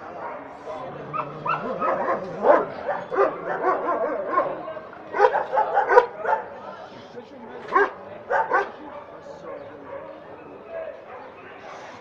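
Dogs barking and yelping in repeated short bursts, loudest in clusters a couple of seconds in, around the middle and about two-thirds of the way through, over background chatter of voices.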